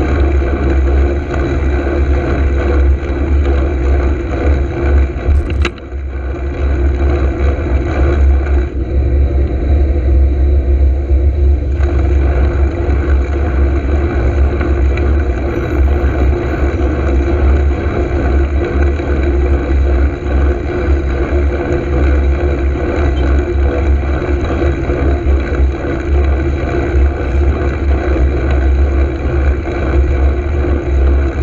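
Steady wind rumble and road noise on the microphone of a moving cycle's camera, with car traffic passing close by. A single sharp click comes about five and a half seconds in.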